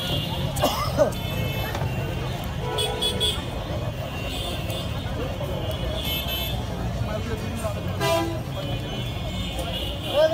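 Busy street ambience: a steady rumble of traffic and background voices, with a few short vehicle horn toots, one about three seconds in and another near eight seconds.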